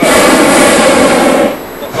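Hot-air balloon's propane burner firing in one loud blast about a second and a half long, cutting off suddenly.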